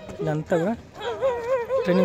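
Voices shouting drawn-out calls of encouragement, a man's and higher ones, with rising and wavering pitch.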